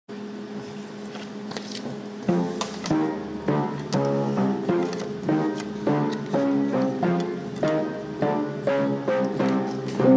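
Instrumental intro of a swing jazz recording: a held chord, then from about two seconds in, louder plucked notes on a steady beat of under two a second.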